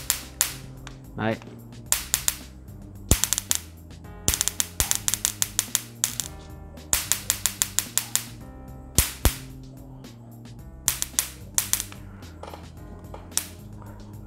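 Electric mosquito-swatter racket's high-voltage mesh arcing to a copper wire in loud, sharp snaps. The snaps come irregularly: single ones and quick rattling runs of several a second. The strong sparks show that the repaired racket, running on a single 3.7 V laptop battery cell, has enough voltage and current.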